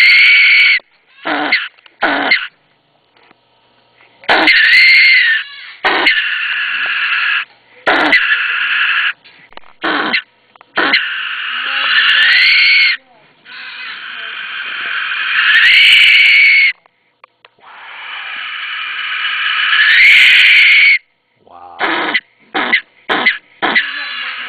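Brushtail possum screeching when disturbed, a defensive threat call: a few short harsh bursts, then a run of long rasping screeches of two to three seconds each, several with a rising-and-falling wail in them, and short bursts again near the end.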